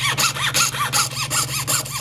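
Jeweler's saw blade cutting through a laminate countertop sample in fast, even hand strokes, about six or seven a second. Each stroke gives a short rising-and-falling squeak, over a steady low hum.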